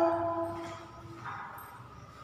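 A woman's voice trailing off, her last sound held for about a second before it fades, then faint room tone.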